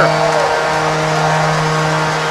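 Arena goal horn sounding one long, steady low note, signalling a home-team goal, over a haze of crowd noise.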